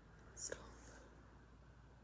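A woman's brief whispered sound about half a second in, short and breathy, then near silence with faint room tone.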